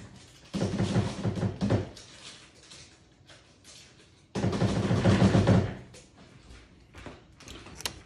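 A container being knocked hard and repeatedly, in two bursts of rapid banging, to loosen and knock out packed substrate.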